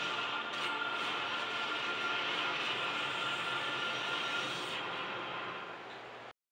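A TV playing a DVD menu's looping soundtrack: a steady rushing noise with a faint held high tone, easing down near the end.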